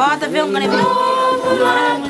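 A group of women singing together unaccompanied, with notes held for about half a second at a time.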